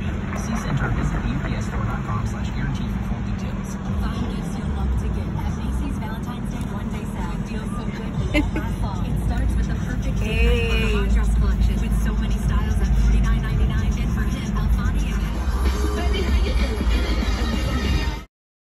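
Music with vocals playing on a car stereo inside a moving car, over the low rumble of engine and road.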